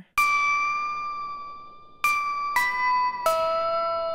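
Bell-like FM synth keys from the Splice Astra plugin's 'Ding Dong' keys preset, with a crooked sound. One long ringing note fades slowly, then about two seconds in three more notes follow in quick succession, the last two each stepping lower in pitch.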